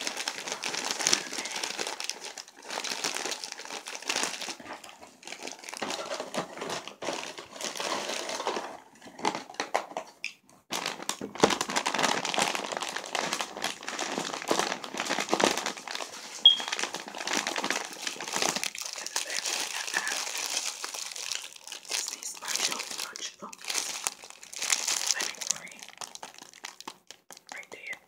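Crinkly plastic snack wrappers handled close to the microphone, crackling and rustling in irregular stretches with a short pause about ten seconds in.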